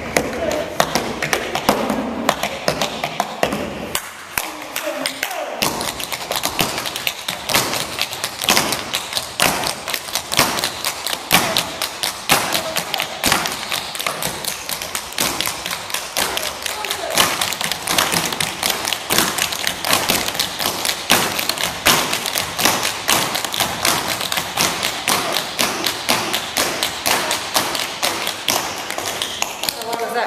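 Several dancers' tap shoes striking a wooden floor in quick, dense rhythms, many taps a second, thinning briefly about four seconds in.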